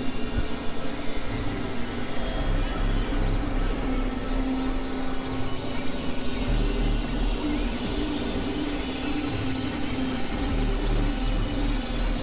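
Experimental electronic noise music made on synthesizers: a dense crackling, hissing noise bed with a held drone tone and a deep bass that drops in and out.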